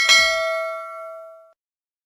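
A single bell 'ding' sound effect as the notification-bell icon of a subscribe-button animation is clicked: one struck chime with several clear ringing tones that fades away within about a second and a half.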